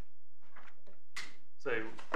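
A pause in a man's speech: a quiet stretch for about a second, a short sharp rustle-like noise, then the man starts speaking again near the end.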